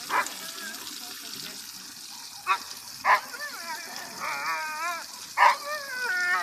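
A husky barking sharply four times, with long wavering howl-like calls between the barks in the second half.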